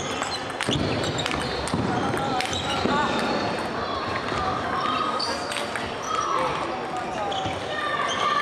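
Table tennis ball sharply clicking off rackets and the table, a few irregular strikes and bounces, over background chatter of voices in the hall.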